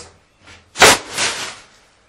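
Large wooden board set down flat onto a newspaper-covered floor: one loud slap a little under a second in, followed by a short fading rustle.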